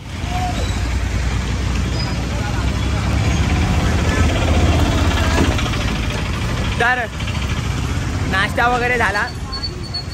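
Busy street traffic: motor scooter and auto-rickshaw engines running close by as a steady, loud din of noise.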